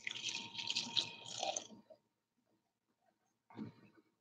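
Water poured into a small plastic water dish in a tarantula enclosure, splashing for a little under two seconds as the empty dish is refilled.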